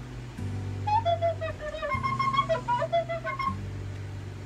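A white plastic soprano recorder playing a short phrase of about eight notes, moving between lower and higher notes, from about a second in until shortly before the end. A low, steady backing-music layer runs underneath.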